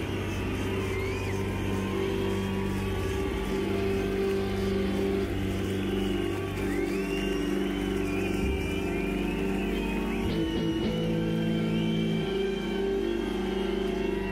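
Live rock music: amplified electric guitars holding long, droning notes, with high sliding tones coming and going over the top.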